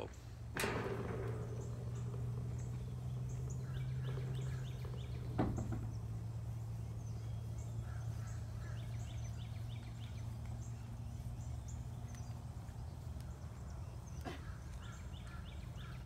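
Birds chirping in short repeated phrases over a steady low hum, with a few sharp knocks, one about half a second in and another around five seconds in.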